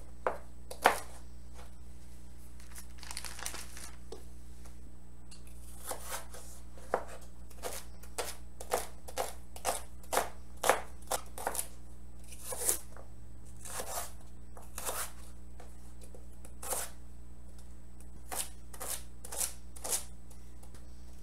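Kitchen knife dicing peeled carrots into small cubes on a cutting board: irregular sharp knocks of the blade on the board, coming thick and fast in the middle stretch and more sparsely elsewhere.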